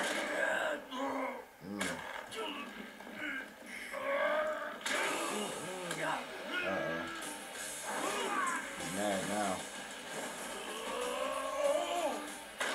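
Anime fight-scene soundtrack: character voices over background music.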